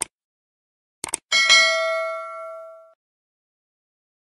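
Animation sound effects for a subscribe button and notification bell: a short click, then two quick clicks about a second in, followed by a bell-like ding that rings out and fades over about a second and a half.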